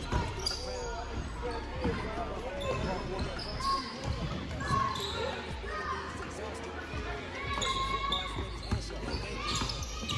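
Basketball bouncing on a hardwood gym floor during play, with a few sharp knocks of the ball, under shouts and chatter from players and spectators echoing in the large hall.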